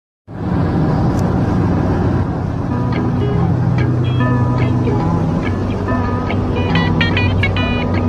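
Steady road and engine noise from inside a car at motorway speed, with music playing over it.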